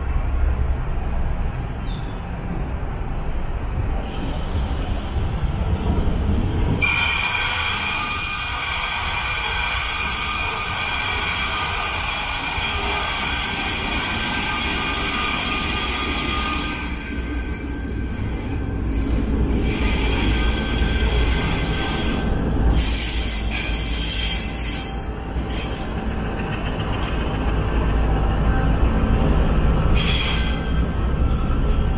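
Diesel-hauled freight train arriving, the locomotive's engine rumbling steadily. About a quarter of the way in, the wheels begin a high squeal that lasts about ten seconds and then fades. Rumble and clatter follow as the train runs in.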